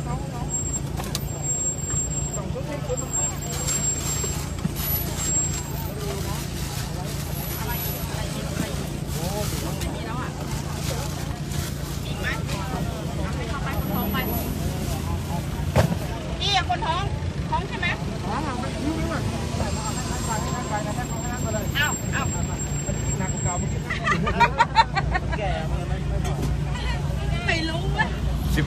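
A vehicle's engine running with a low, steady hum, heard from inside the cab as it creeps along, under a murmur of voices from a roadside crowd. A few louder voices come through in the middle and near the end.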